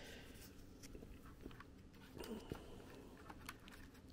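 Near silence with faint small clicks and rustles of a micro SD card being handled and pushed into a small external card reader, a slightly louder cluster of clicks a little past two seconds in.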